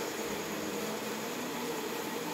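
Steady room noise, an even hiss, with faint indistinct murmur from a room full of seated children.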